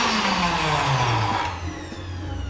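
Electric blender (mixer grinder) motor spinning down after being switched off, its pitch falling steadily and fading over about a second and a half, with liquid in the jar.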